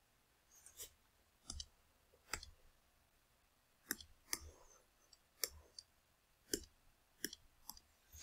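Faint, sharp clicks from a computer input device, about nine of them at uneven intervals, with near silence between.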